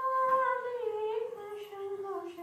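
A woman's unaccompanied voice singing a Shiva bhajan, holding one long hummed note that slides slowly down in pitch.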